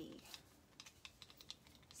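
Near silence with a handful of faint, short, irregular clicks.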